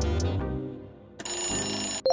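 Background music with a beat fades out within the first second; then, about a second in, an electronic ringing alarm tone starts and holds steady, the quiz timer's time-up sound effect.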